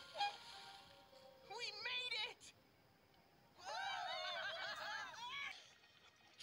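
High-pitched laughter from animated characters, in two bursts: a short one about a second and a half in and a longer run of quick giggling pulses from about three and a half seconds in, over faint background music.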